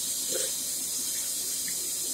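Bathroom sink faucet running steadily into the basin, an even hiss of water.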